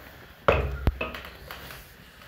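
Metal spoon striking a steel bowl and metal pot: a ringing clank about half a second in, a sharp click, then another ringing clink.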